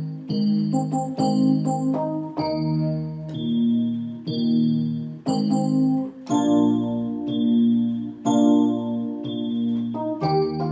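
Portable electronic keyboard played with both hands in a piano-like voice: slow sustained chords struck about once a second over a low bass line, with no drums or singing.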